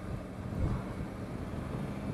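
Triumph Tiger 850 Sport's 888cc three-cylinder engine running at a steady road speed with a low, constant engine note, mixed with wind rush and road noise on the microphone.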